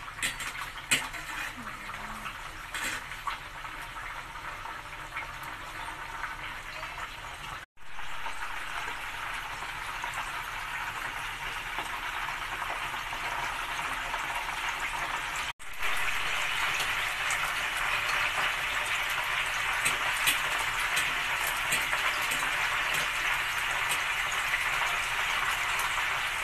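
Whole bakoko fish deep-frying in hot oil in a frying pan: a steady sizzle with sharp crackles in the first few seconds. The sizzle cuts out briefly twice and comes back louder each time.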